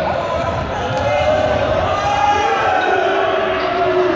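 A group of students calling out and shouting over each other in a large gym hall, with running feet thudding on the hard court floor.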